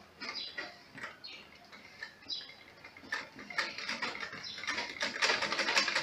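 A sewing machine stitching a sleeve seam, its needle mechanism ticking. The ticking is slow and scattered at first, then fast and even from about halfway, quickest and loudest near the end.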